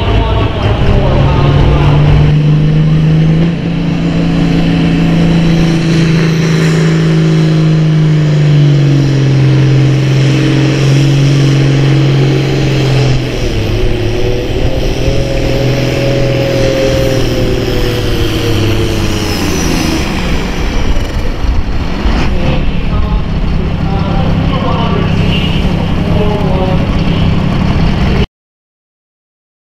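Turbocharged diesel pro stock pulling tractor engine running at full throttle under load as it drags a weight-transfer sled. Its steady high pitch dips about halfway through as the load builds, then falls away sharply about twenty seconds in as it comes off the throttle at the end of the pull.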